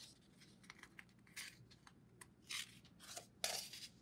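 A picture book's paper page being turned by hand: a few faint, short rustles and swishes of paper.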